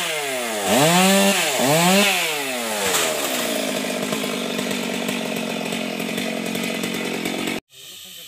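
Chainsaw cutting wood, its engine pitch dipping and recovering several times as it bites and eases off, then holding a steadier pitch under load before stopping suddenly near the end.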